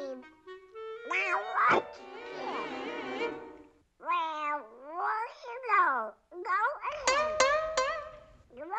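Cartoon soundtrack: orchestral score with a sharp splat about a second and a half in, then a run of high, swooping cartoon-character vocalizing, falling in pitch, typical of a small character laughing.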